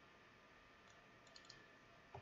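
Near silence, with a few faint, short clicks a little past the middle: a computer mouse being clicked to select text.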